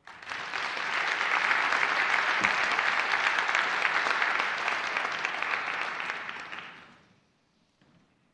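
Conference audience applauding in a large hall. The clapping starts at once, holds steady for about six seconds, then dies away.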